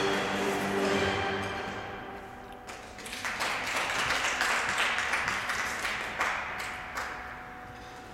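Program music with held chords fading out over the first two seconds, then audience applause with many hand claps in a rink hall, thinning out near the end.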